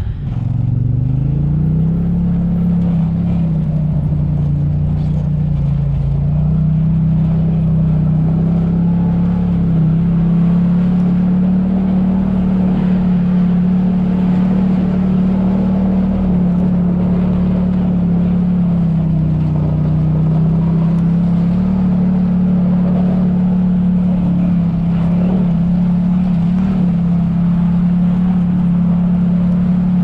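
Side-by-side UTV engine revving up from low revs in the first two seconds, then running at a steady drone under way, with two brief dips in revs, one a few seconds in and one past the middle.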